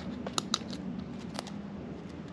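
Cardboard template being handled and pressed against a metal engine-mount bracket: soft rustling with a few sharp clicks, three of them in the first second and a half, over a faint steady hum.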